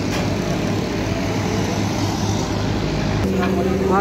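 Steady low rumble of road traffic. A steady low hum sets in near the end.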